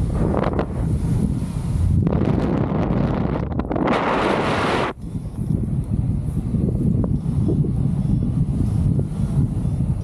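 Airflow buffeting the camera microphone during paraglider flight: a steady low rumble, with a louder rush of wind from about two seconds in that swells near four seconds and cuts off suddenly about halfway through.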